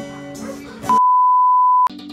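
Acoustic guitar playing, cut off about a second in by a loud, steady, single-pitched beep that lasts about a second and ends in a sharp click as another music track begins.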